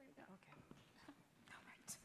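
Near silence with faint, murmured voices, and a brief sharp click just before the end.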